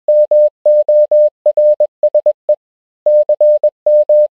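Morse code beeps: a single steady tone keyed on and off in a quick run of short and long beeps, with a pause of about half a second in the middle.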